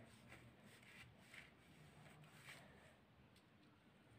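Near silence, with a few faint soft scrapes of a kitchen knife cutting through set coconut barfi and touching the steel plate beneath.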